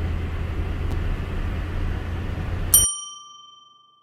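Steady car road and engine noise from inside the cabin, cut off almost three seconds in by a single bright bell-like ding that rings out and fades over about a second. The ding is a title-card sound effect.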